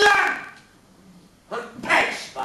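A dog barking twice, about a second and a half apart.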